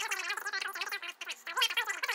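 A man's speech played fast-forward: his voice sped up, high-pitched and chattering too quickly to make out words.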